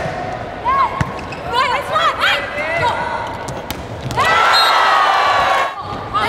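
Volleyball players' court shoes squeaking in short chirps on an indoor court floor, with a few sharp slaps of the ball being hit. About four seconds in, a single held high tone lasts for over a second.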